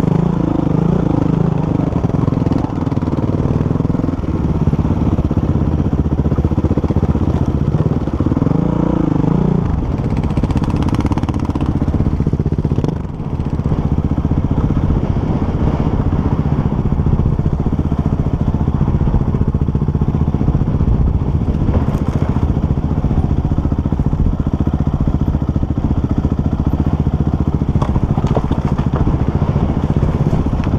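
Off-road enduro motorcycle engine running under way over rough ground, its revs rising and falling over the first ten seconds, with a brief drop about thirteen seconds in, then holding steadier.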